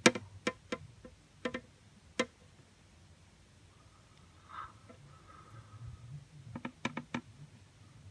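Sharp clicks of long metal feeding tweezers: a few separate clicks in the first couple of seconds, then a quick cluster of clicks near the end.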